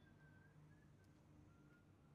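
Near silence: a faint low hum with a few faint, thin high tones.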